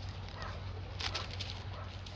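Faint short animal calls repeating about once a second, over a steady low hum, with one sharp click about a second in.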